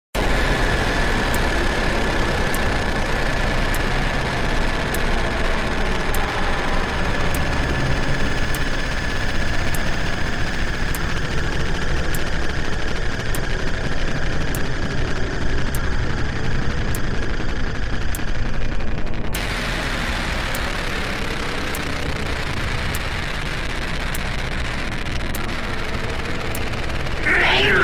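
Intro of an electronic deathstep track: a dense, steady low noise drone with a faint high tone that fades out around the middle, and a light tick about every 1.2 seconds. About 19 seconds in the texture changes: the top thins and the level drops slightly.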